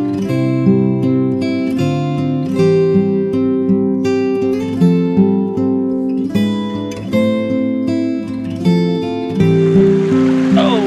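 Acoustic guitar background music.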